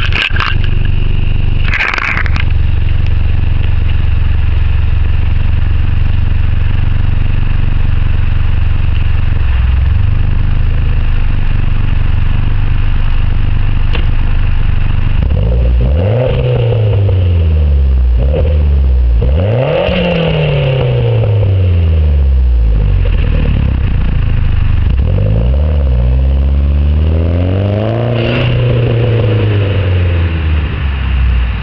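2011 Mitsubishi Lancer Ralliart's turbocharged 2.0-litre four-cylinder breathing through a CP-E turbo-back exhaust: it idles steadily for about fifteen seconds, then is revved in a series of quick rises and falls. Near the end the car pulls away.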